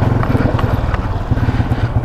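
Yamaha LC135 V8 underbone motorcycle's single-cylinder four-stroke engine running at low revs as the bike pulls away slowly, with a steady, rapid pulsing exhaust beat.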